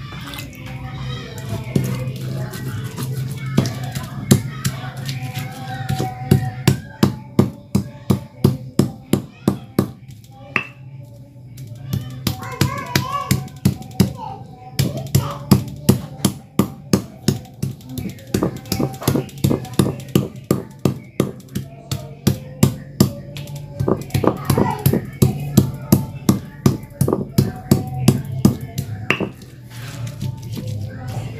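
Stone pestle pounding and grinding chilli sambal in a rough stone mortar (Indonesian ulekan and cobek): sharp stone-on-stone knocks about two or three a second, in two long runs with a lull in the middle. Voices and music carry on in the background.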